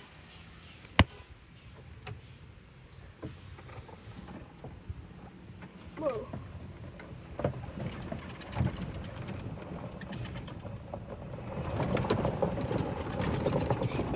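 Handling noise of a phone being carried and moved: one sharp click about a second in, a few faint knocks, and rustling noise that grows louder over the last few seconds.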